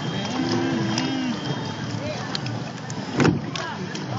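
Voices of people in boats on a lake, one drawn-out call in the first second or so, over a steady rush of wind and water noise, with a single knock a little past three seconds in.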